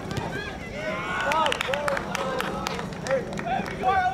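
Voices shouting and calling out across a soccer field during play, in short rising and falling calls, with several sharp knocks about one and a half to three seconds in.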